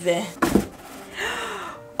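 A white cardboard cake box being opened: a short cardboard thump and rustle about half a second in, then a sharp breathy intake of breath, a gasp of surprise at the cake inside.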